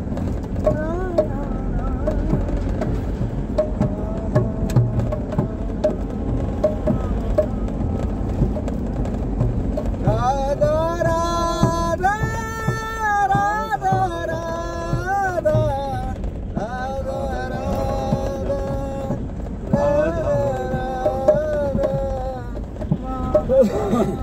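Devotional kirtan singing with drum accompaniment: a voice holds long, gliding melodic notes and grows much louder about ten seconds in. Underneath runs a low, steady rumble, consistent with a moving vehicle.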